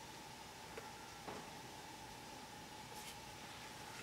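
Quiet kitchen with a faint steady hum and a few soft scrapes and taps of a spatula against a metal mixing bowl as the last of a custard mixture is scraped out.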